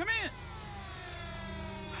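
A shouted 'come in!' ends, then a long held tone with many overtones slides slowly down in pitch.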